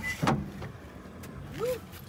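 A pickup truck's door unlatching and opening with a short click or two, followed by quiet handling noise in the cab.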